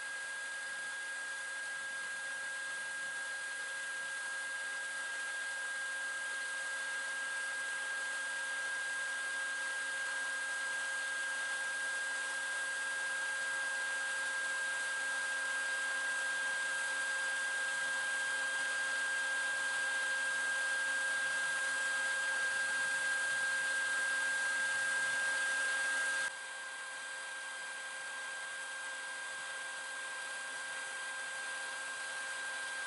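Colorado Bee Vac bee vacuum running steadily with a whine, sucking bees off the comb through its hose. It slowly grows louder, then drops suddenly in level near the end.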